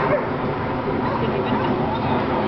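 A dog barking, loudest just after the start, over a steady murmur of people talking.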